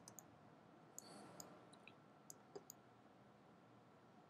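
Faint computer mouse clicks, about half a dozen scattered irregularly, over near-silent room tone.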